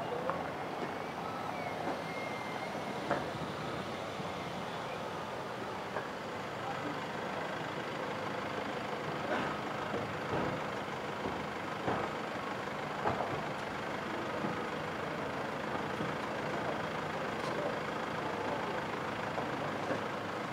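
Slow-moving cars: a steady engine and road hum, with a few short clicks and knocks scattered through.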